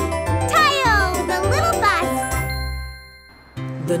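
Cartoon background music with a tinkling, sparkly flourish of sweeping notes about half a second in, fading out to near quiet around three seconds in, then starting again just before the end.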